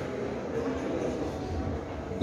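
Indistinct chatter of several people talking in a large, echoing hall, with no single clear voice.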